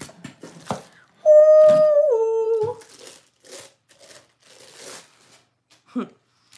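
A woman humming a held two-note "mm-mm", the second note lower, about a second in and lasting about a second and a half. Faint crinkling and rustling of packaging being handled runs around it.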